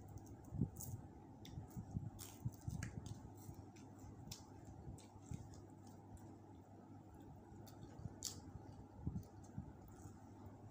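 Faint eating sounds: crispy roast chicken being pulled apart by hand and chewed, with scattered small crackles and clicks and soft mouth sounds.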